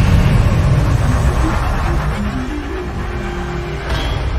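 Cinematic intro soundtrack of music and sound effects: a deep low rumble that slowly eases off, a few short synth notes in the second half, and a sharp hit near the end.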